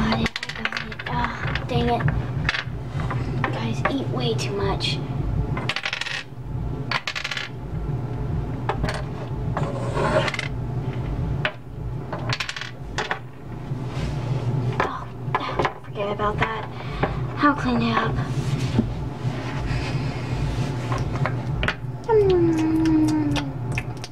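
Hard plastic Littlest Pet Shop figurines and small toy pieces clicking and clattering on a hard tabletop as they are handled: many separate sharp clicks, with a falling squeak near the end.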